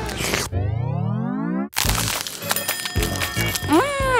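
Background music with a comic cartoon sound effect: a rising sweep about half a second in that lasts about a second and cuts off abruptly.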